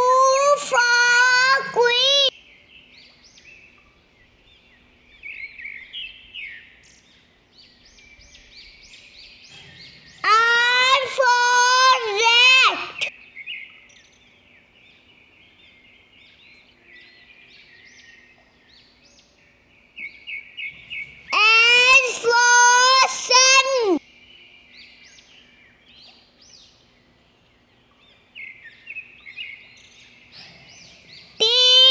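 A child's high voice sings three short phrases about ten seconds apart, with faint bird chirping in the gaps between them.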